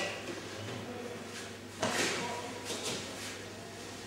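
Rustling of cotton training uniforms and scuffs of bare feet shifting on the mat as two people work through an aikido technique, with a sharper scuff a little under two seconds in.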